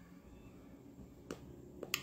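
Quiet room tone with a few faint, short clicks in the second half, one about a second and a half before the end and two more just before it ends.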